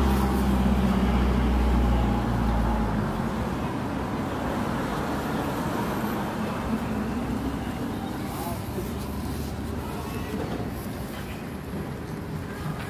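City street traffic noise, with a heavy vehicle's low engine hum close by that cuts off about three seconds in, leaving a steady traffic wash.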